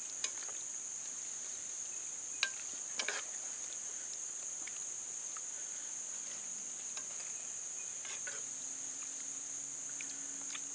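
Insects droning in a steady high buzz, with a few sharp clicks of a metal spoon against a cast-iron Dutch oven as a tomato stew is stirred; the loudest clicks come about two and a half and three seconds in.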